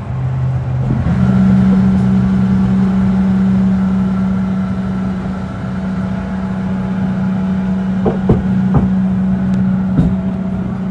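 Spider ride's drive machinery humming steadily; its pitch steps up and grows louder about a second in as it comes up to power. A few sharp clunks from the ride come near the end.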